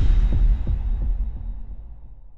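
A deep, booming intro sound effect: a low rumble that throbs a few times and fades out over about two seconds.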